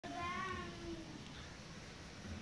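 Cocker spaniel puppy giving one drawn-out, high whine in the first second, then quiet.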